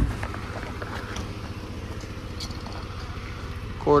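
A car door slammed shut with one loud thump, followed by a steady low hum.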